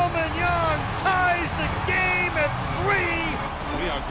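A television play-by-play announcer speaking excitedly over the steady noise of a stadium crowd.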